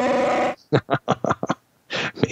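A man laughing: one drawn-out note, then a quick run of short bursts, about ten a second, that breaks off halfway through.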